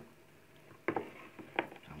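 A spoon clinks a few times against a soup bowl and a plate, in short sharp knocks about a second in, while spinach is scooped from the soup onto rice.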